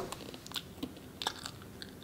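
A person chewing dry, decades-old raisins: faint, irregular crunchy clicks.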